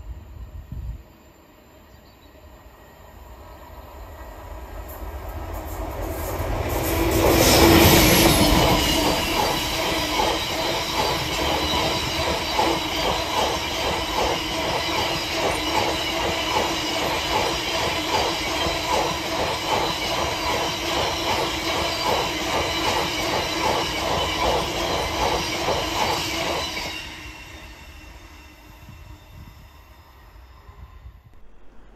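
A diesel-hauled freight train of Drax biomass hopper wagons passing on a curve. The locomotive grows louder to a peak about eight seconds in. The wagons follow with a steady rhythmic clatter of wheels and a thin wheel squeal, dying away near the end.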